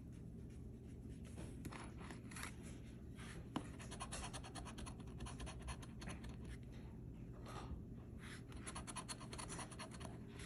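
A coin scraping the scratch-off coating from a paper lottery ticket in quick, rapid strokes, starting about a second and a half in. There is one sharp click about three and a half seconds in.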